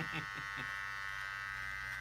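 Electric hair clippers running with a steady, even buzz.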